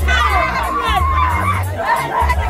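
Several women wailing and crying out in grief, their high voices overlapping and sliding in pitch, over a steady low bass from background music.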